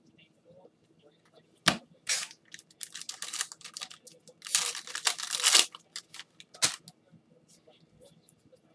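Foil trading-card pack wrapper being torn open and crinkled by gloved hands: a sharp snap about two seconds in, then bursts of tearing and crinkling, loudest around the middle, and a second snap near the end.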